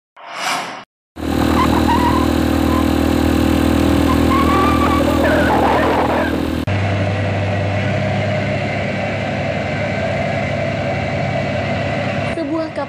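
A brief whoosh at the very start, then a loud, steady engine drone with a low hum. A little past halfway it cuts abruptly to a different steady engine drone.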